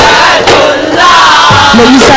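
Daf Muttu troupe chanting loudly together in male voices, with sharp strikes on daf frame drums near the start.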